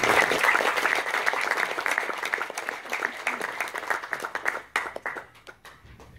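Audience applauding: many hands clapping, loudest at the start, then tapering off over about five seconds into a few scattered claps.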